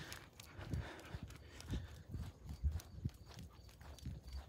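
Faint footsteps walking on an asphalt road, an irregular run of soft thumps about twice a second with light clicks among them.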